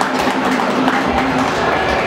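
Audience applause filling the hall as a song ends, with the tail of the backing music track faintly under it.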